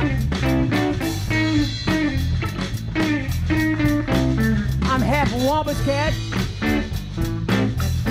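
A live blues-rock band playing: electric guitar over bass guitar and a drum kit with a steady beat, with a single sung word a little past halfway.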